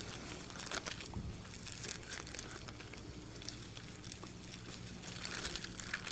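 Faint rustling and flicking of thin Bible pages and a loose paper sheet being turned by hand, over a steady low electrical hum.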